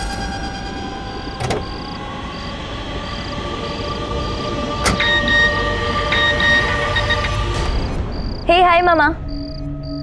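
Background music score with sustained tones. A click comes about a second and a half in and a sharper knock about five seconds in, over a faint chirp that repeats about twice a second.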